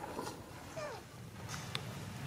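Pig-tailed macaque giving one short call that falls in pitch, about a second in, followed by a couple of faint clicks.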